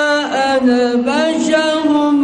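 A man reciting the Quran in a melodic chant into a microphone, holding long drawn-out notes. The pitch dips and glides about a quarter to half a second in, settles on a lower note, and rises again about a second in.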